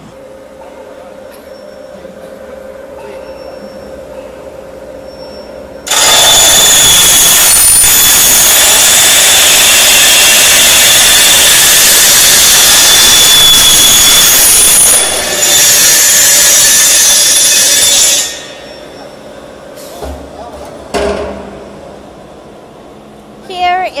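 Servo-tracking circular cutting saw of a square-pipe roll forming line cutting off a length of the welded steel square tube. Over a steady machine hum, a very loud, shrill cutting noise starts suddenly about six seconds in, dips briefly, and stops about twelve seconds later. A couple of knocks follow as the cut finishes.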